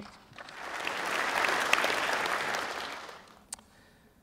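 Audience applauding: the clapping swells up over about a second and dies away after about three seconds. A single sharp click follows near the end.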